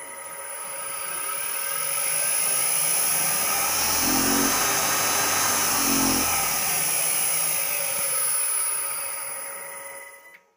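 Three-phase induction motor fed by a Danfoss FC-302 frequency converter on a test run of the repaired drive: it ramps up to speed over the first few seconds, runs steadily with a rushing fan noise and a steady high whine over it, then ramps down near the end.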